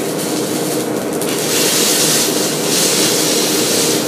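Okonomiyaki frying on a teppan griddle: a steady sizzle that grows louder and hissier about a second and a half in, over a low steady hum.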